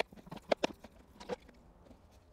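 A few hollow knocks from a plastic jug being handled and tipped over a grow bag: two close together about half a second in, another just past a second.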